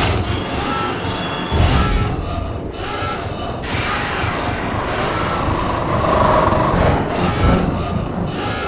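Animated action soundtrack: dramatic music over a heavy rumble with several booms, and a short high tone repeating about once a second.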